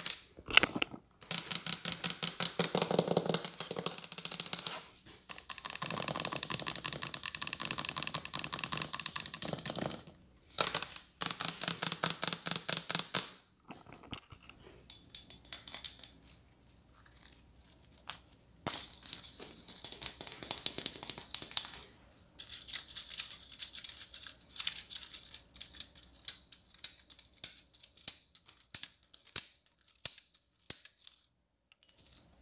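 Long fingernails tapping and scratching quickly on Christmas decorations, first on a shelf with garland, then on hanging tree ornaments. The tapping comes in rapid bursts of a few seconds with short pauses, and goes quieter and sparser for a few seconds in the middle.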